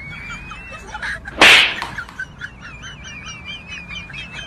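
Birds chirping and warbling steadily in the background, with one loud, sudden noisy hit like a whip crack or slap about one and a half seconds in, fading over about half a second.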